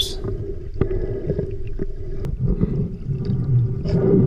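Underwater sound picked up by a GoPro in its housing while swimming: a steady muffled rumble of moving water with scattered small clicks and crackles.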